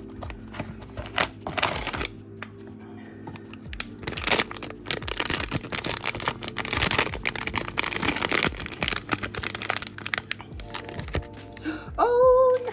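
Thin plastic blind-box bag crinkling and tearing as it is opened by hand, in dense rustles and crackles through the middle stretch. Light background music plays throughout.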